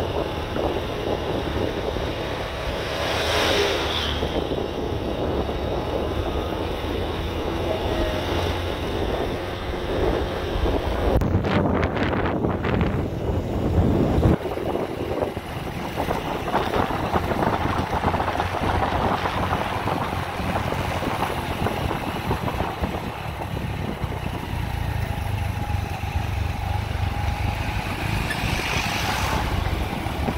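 Motorbike running steadily under way, its engine drone mixed with wind buffeting the microphone, which grows louder about eleven to fourteen seconds in.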